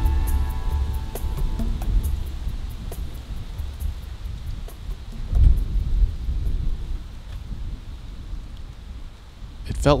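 Wind gusting through trees and buffeting the microphone: an uneven low rumble that swells and fades, strongest about five and a half seconds in. The last notes of background guitar music fade out at the start.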